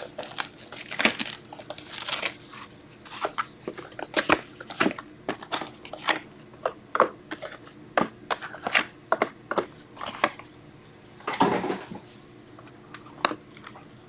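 Plastic shrink wrap crinkling and tearing as a sealed trading-card box is unwrapped and opened, then cardboard rustling and light knocks as the shrink-wrapped mini boxes are lifted out and stacked. Many short crackles and clicks, with a longer rustle about eleven seconds in.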